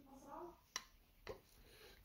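Near silence, with a carving knife cutting into wood: a sharp click near the middle and a fainter one just after. A faint voice murmurs in the first half second.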